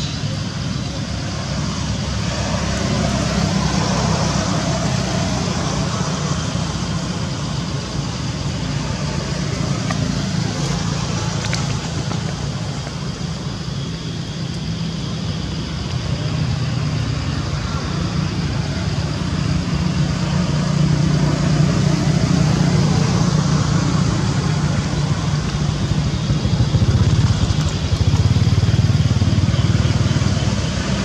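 Steady low rumble of outdoor background noise that swells slowly and grows louder in the last third.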